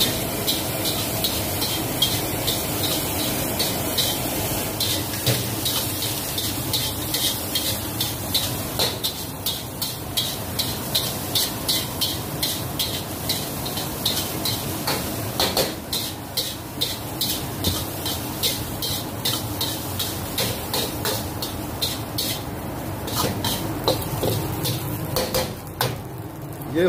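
Metal spatula scraping and knocking against a carbon-steel wok a few times a second as rice is stir-fried, over the steady rush of a gas wok burner and frying.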